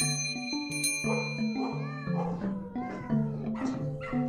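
A cat meowing several times over soft background music, with bright bell-like tones ringing in the first two seconds.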